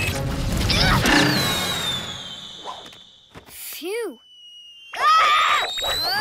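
Cartoon soundtrack: music and a character's cry, then a long, slowly falling high whistle effect. A short lull follows, broken by a brief rising-and-falling squeak about four seconds in, before the music comes back about a second later.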